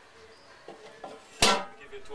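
A lid put back onto a large pot: one sharp clack about one and a half seconds in, with a brief ring after it, and some fainter handling knocks just before.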